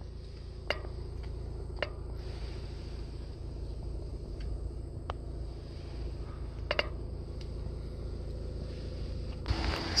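Low steady hum inside a stationary car's cabin, with a few light clicks; about half a second before the end a brighter, louder hiss takes over.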